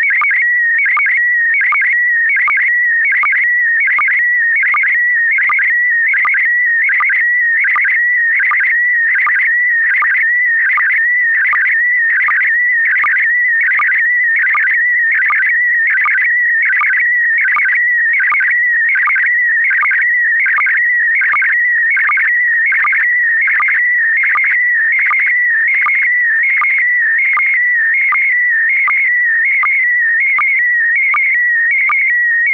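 Slow-scan TV image transmission: a continuous warbling audio tone around 2 kHz, interrupted by a short sync pulse about twice a second, one for each scan line of the picture.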